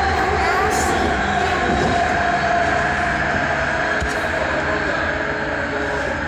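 Metro train running along the track, heard from inside the carriage: a steady rumble of wheels on rails with a steady motor whine over it.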